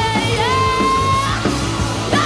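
Live rock band playing: a woman sings a long held high note, sliding into it and breaking off near the end, over electric guitars, bass, keyboards and a steady drum beat.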